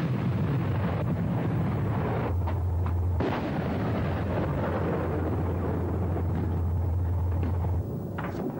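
Truck-mounted anti-aircraft gun and other heavy weapons firing as one continuous dense rumble, with a sharp crack about three seconds in. A steady low drone runs through most of it.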